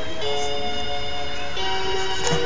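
Baby's crib mobile playing a slow lullaby tune of held, bell-like notes, changing pitch about twice in two seconds.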